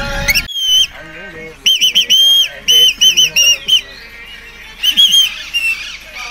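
A series of loud, shrill whistle notes: a brief break about half a second in, then a quick run of about six short whistles, and another around five seconds in.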